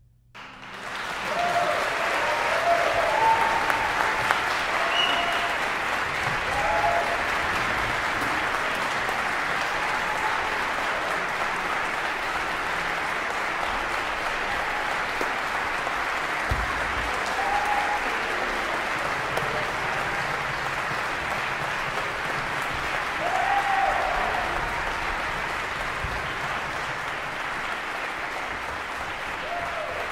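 Applause breaks out suddenly just after the final chord and keeps up steadily, with a few short shouted whoops.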